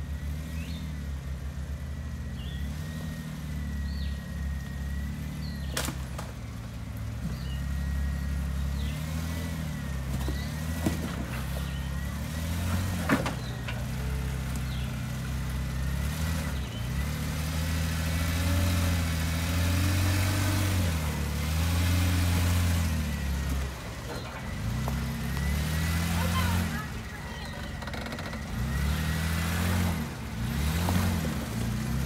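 Jeep Wrangler engine crawling up a rocky ledge at low revs, the revs rising and falling again and again as the throttle is fed in and let off, louder in the middle stretch. A couple of sharp knocks come about six and thirteen seconds in.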